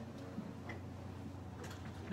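A handheld microphone being passed from one person to another, giving a few faint, irregular handling clicks over a low steady hum.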